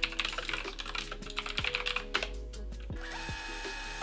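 Computer keyboard typing: a quick run of keystrokes for about two seconds, then thinning out, over soft background music.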